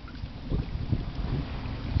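Wind buffeting the microphone, a low uneven rumble, on an open boat.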